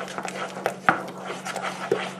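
Wooden spoon stirring a thick, hot fudge mixture in a metal saucepan, with soft irregular scraping against the pan and one sharper knock about a second in.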